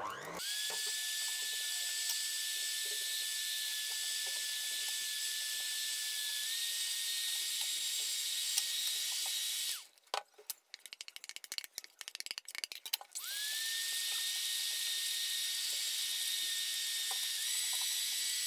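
Electric hand mixer beating flour and water into pakora batter: a steady motor whine whose pitch steps up slightly partway. About ten seconds in it stops for some three seconds, with a scatter of small clicks and knocks, then starts again.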